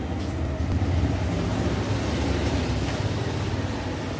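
A road vehicle's engine running steadily: a low, continuous rumble with traffic-like noise over it.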